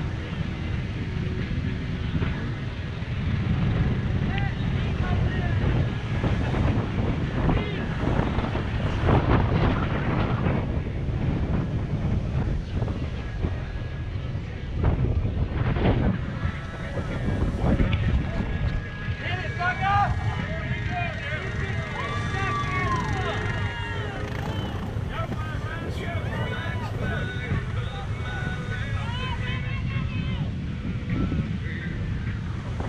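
ATV engine running as it rides a muddy trail, a steady low rumble, with wind buffeting the microphone.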